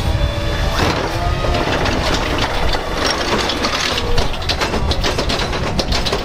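Natural-gas automated side-loader garbage truck running steadily while its hydraulic arm grips a wheeled cart and lifts it toward the hopper. Clanks and rattles come more often in the second half, as the cart is raised.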